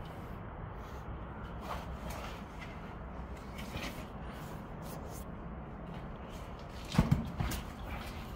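Faint rustling and scraping of clothes, hands and shoes on rock as people crawl through a narrow rock crevice, over a steady low rumble, with a few sharp knocks about seven seconds in.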